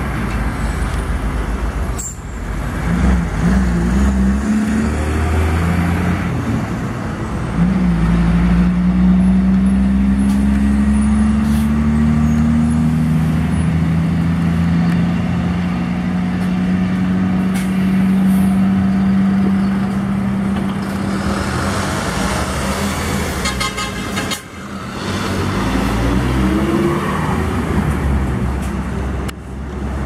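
Volkswagen 24-220 Worker box truck's diesel engine pulling past under load, its pitch climbing slowly for over ten seconds, over tyre and road noise. The sound breaks off suddenly a few times and picks up again.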